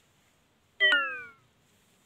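A single short animal call about a second in, starting suddenly and falling steadily in pitch as it dies away over about half a second.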